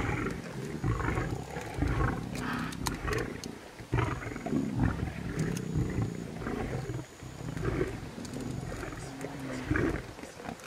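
Lions growling over a kudu carcass as they feed, in repeated low, rough bursts every second or so, with a few sharp clicks among them.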